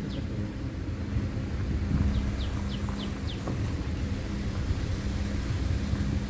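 Safari vehicle's engine running steadily with a low hum while driving. About two seconds in, a bird calls a short run of about five quick, descending high notes.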